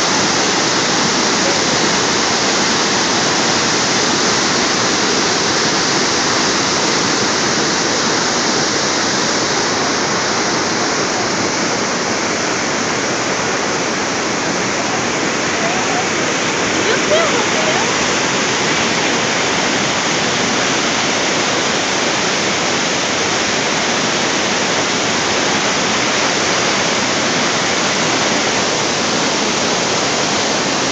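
Niagara Falls' water pouring over the brink and crashing into the gorge below: a loud, steady rush of falling water.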